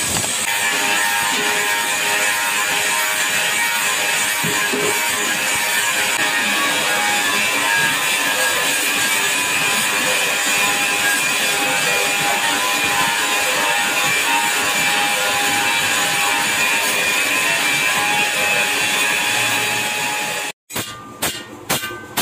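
A steel disc turning on a vertical metal-spinning machine, with the forming tool pressed against it: a loud, steady metallic screech and rub with several ringing tones held throughout. Near the end it cuts off suddenly and rapid hammer blows on an iron pan follow, about three a second.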